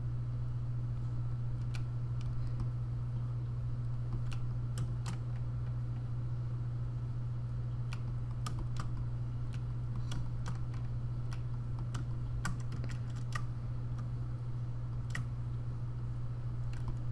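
Irregular clicking of a computer mouse and keyboard as polygons are drawn on a 3D mesh, some clicks coming in quick clusters. A steady low hum runs underneath.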